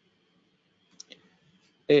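Two quick, faint keystrokes on a computer keyboard about a second in, as a text label is edited. A man starts speaking near the end.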